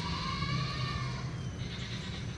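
A single drawn-out, wavering animal call lasting about a second, over a steady low hum.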